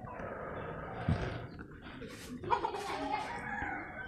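A chicken calling and clucking, once near the start and again in a longer run over the second half.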